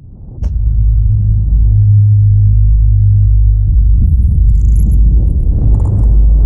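Loud, steady, very deep rumble that starts abruptly with a click about half a second in, like a cinematic sub-bass rumble.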